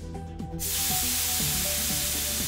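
Espresso machine steam wand venting steam: a loud, steady hiss that starts suddenly about half a second in.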